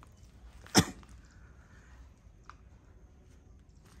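A man's single short, sharp cough, about a second in.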